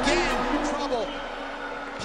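A man's voice over a music track that grows steadily quieter as its deep bass drops away.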